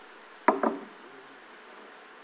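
Two quick knocks, a fraction of a second apart, about half a second in, as clamps and tools are worked against the top of a fibreglass boat bulkhead.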